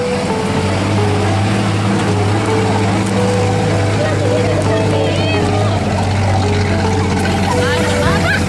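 Hardtop 4x4's engine running in a steady drone as it climbs a rough rocky track, with passengers' voices over it. Background music with held notes plays underneath.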